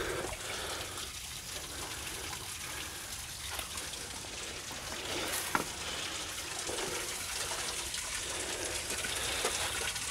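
Steady trickle and gurgle of water running among the rocks of a gully stream, with a couple of light knocks about halfway through.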